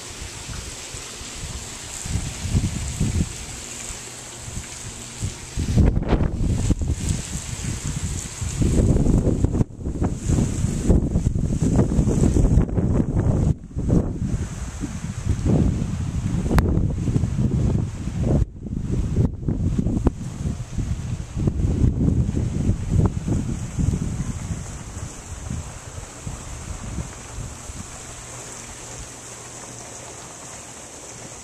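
Wind buffeting the camera microphone in irregular low gusts. It picks up about a fifth of the way in, is loudest through the middle, and dies down near the end.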